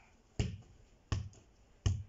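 A football being kicked up off a foot: three short thuds, evenly spaced about two-thirds of a second apart.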